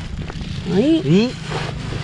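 A person's voice: a short exclamation with a rising pitch about a second in, over a steady low rumble.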